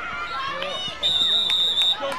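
Referee's whistle, one steady shrill blast just under a second long starting about a second in, blown to end the play. Shouting voices come before it.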